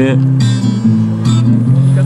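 Acoustic guitar played live, a held chord ringing with fresh strums about half a second in and again just past a second, in the gap between sung lines of a refrain.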